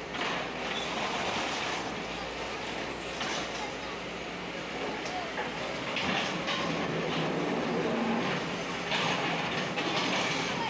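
Long-reach Sumitomo SH250 excavators demolishing brick-and-concrete buildings: a steady mechanical clatter of machinery and breaking rubble, with several sharper crunches of masonry through it.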